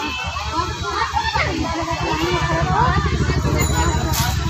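Overlapping chatter of women's and children's voices, some high-pitched, with no single speaker standing out, over a steady low rumble.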